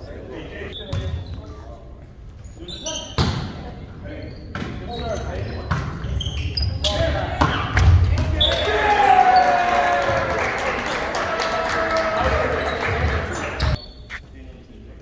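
A volleyball rally in a gym: about five sharp smacks of the ball being served, passed, set and hit, echoing in the hall. Then several seconds of players and spectators shouting and cheering as the point ends.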